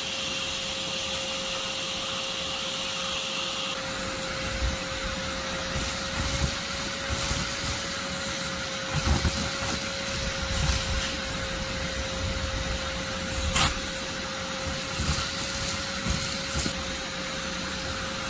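Vacuum running steadily with a constant whine as its hose sucks at the opening of an underground yellow jacket nest, with occasional knocks and clicks. A higher hiss drops away about four seconds in.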